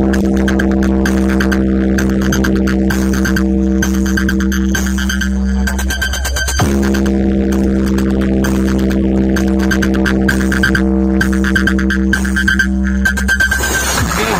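Loud electronic dance track with a heavy, droning bass and a fast beat, played through a large DJ box speaker stack of horn-loaded speakers during a sound check. About six and a half seconds in a falling sweep cuts the drone, which then starts again.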